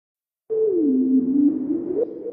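An electronic tone starting about half a second in, sliding down in pitch and then back up over a faint hiss.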